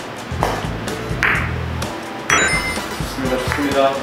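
A carom billiard shot: the cue tip strikes the cue ball, followed by several sharp clicks as the balls hit each other and the cushions, scoring a point. Background music plays throughout.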